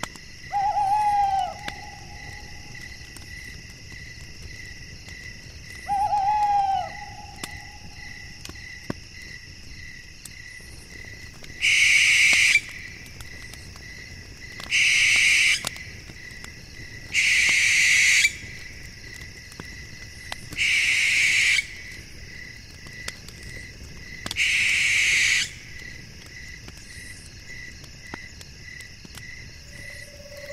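Owl calls at night: two short pitched hoots in the first seven seconds, then five loud, harsh, hissing screeches of about a second each, spaced roughly three seconds apart. Under them runs a steady, fast-pulsing chirping of crickets.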